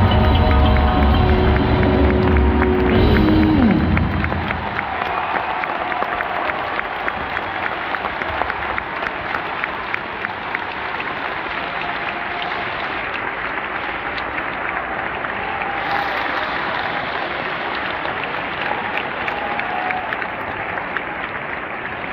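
A live band's song ends on a final chord with a falling slide about four seconds in, and a large audience then applauds steadily to the end.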